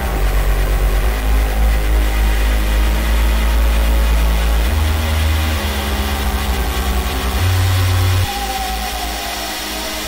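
Electronic synth music: a deep, sustained synth bass holds long notes that step to new pitches every few seconds. A little past eight seconds the bass drops away, the music gets quieter, and a high synth tone starts gliding slowly downward.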